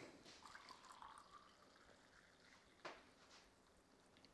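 Faint trickle of brewed coffee being poured from a glass server into a cup, with a single soft click about three seconds in.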